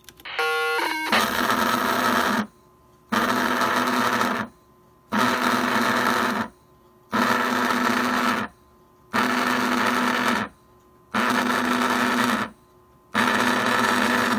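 Long Range Systems restaurant pager going off after a HackRF replay of its page signal. It plays a short run of falling beep tones, then buzzes in repeated pulses, each about a second and a half long and about two seconds apart, while its red lights flash.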